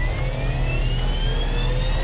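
A rising electronic whine, several tones climbing slowly together over a steady low rumble: a charging-up sound effect, like an electric motor spinning up.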